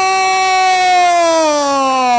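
Radio commentator's long, drawn-out goal cry: one held, loud note that slides downward in pitch near the end.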